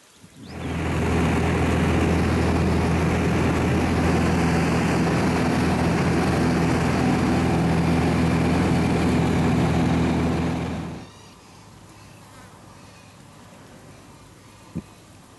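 Light aircraft's engine and propeller droning steadily, heard from inside the cabin. The drone comes in about half a second in and stops abruptly about eleven seconds in, leaving a faint low hum.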